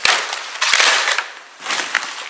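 Plastic-wrapped Lunchables packs crinkling and clattering as they are handled and stacked, with sharp clicks among the rustle; it eases off about a second and a half in, then picks up again.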